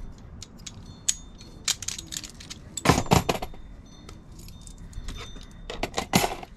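Small metal tool parts clinking and clattering as they are handled, with scattered light clicks, a louder clatter about three seconds in and another near the end.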